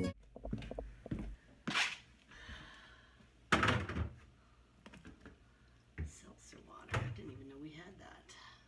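Glass bottles and aluminium cans knocking and clinking as they are handled out of a refrigerator's bottom drawer and set down on a wooden floor: about four separate knocks a second or two apart, the loudest about three and a half seconds in.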